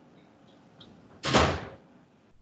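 A single loud thump about a second in, dying away within half a second, over faint room noise on a video-call audio feed.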